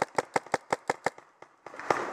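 Paintball marker firing a rapid, even string of shots, about five or six a second, stopping a little past a second in. A louder click and rustle come near the end.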